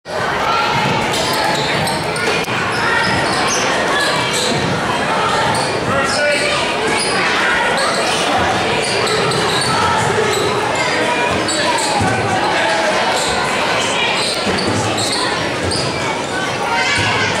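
Basketball being dribbled on a hardwood gym floor during play, under steady chatter and calls from spectators, all echoing in a large gymnasium.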